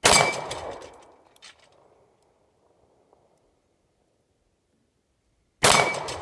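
Two shots from a .45 ACP semi-automatic pistol, about five and a half seconds apart, each echoing and dying away over a second or so. A thin metallic ring lingers after the shots, as a steel target plate is struck.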